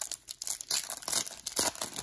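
Shiny plastic wrapper of a 2004 Fleer Inscribed football card pack crinkling as it is torn and peeled open by hand. A quick run of sharp crackles comes thicker in the second half.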